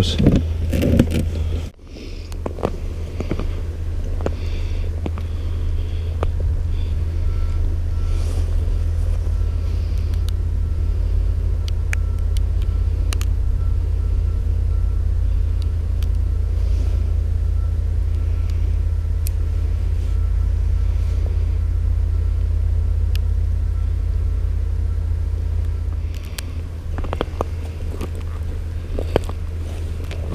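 Steady low rumble of wind buffeting the microphone. A faint high tone is heard through the middle, and a few light knocks come near the end.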